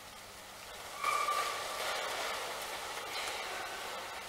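Soft rustling of paper pages that swells about a second in and slowly fades: the congregation leafing through their Bibles to find the verse just announced.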